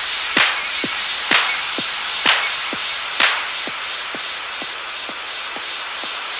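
Instrumental outro of an electro house mashup beat: a steady four-on-the-floor kick drum about two beats a second under a noisy synth wash, with clap hits on every second beat until about three seconds in, then only kick and hi-hat ticks as the track winds down.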